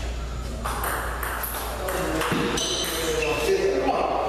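Celluloid-type table tennis ball clicking back and forth off the paddles and the table in a singles rally, a sharp tick about every half second.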